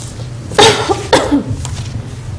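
A person coughing twice, two short harsh coughs about half a second apart.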